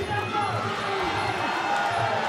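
Indistinct shouting and voices from a fight crowd, with no clear words.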